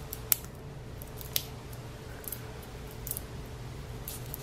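Plastic label of a Coca-Cola bottle being peeled away along its cut lines: faint crinkling, with a few sharp ticks and snaps as it tears.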